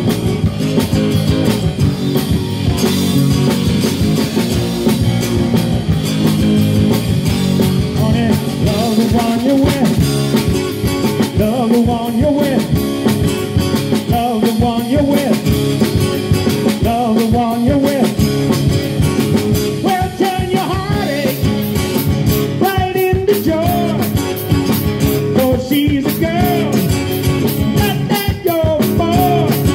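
Live rock band playing on drum kit, electric bass and guitars, with a pitch-bending lead melody coming in about eight seconds in.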